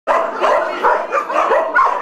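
Several shelter dogs barking and yelping in their kennels, with many short calls overlapping one another.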